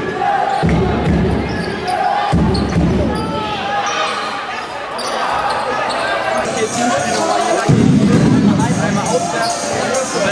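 Basketball game sound in a sports hall: a ball being dribbled on the court, with voices and crowd noise. A low rumble comes in twice, near the start and again for the last couple of seconds.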